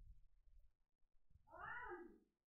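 Near silence, then about one and a half seconds in a single short pitched call that rises and falls.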